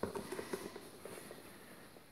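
Faint rustling with a cluster of light clicks and taps, densest at the start and thinning out.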